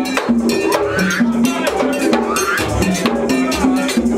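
Ceremonial drumming-and-bell music: fast, dense percussion led by a metal bell like a cowbell, with rattles, over a repeating two-note low line.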